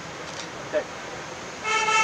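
A vehicle horn gives one short, steady toot of about half a second near the end, over steady outdoor background noise.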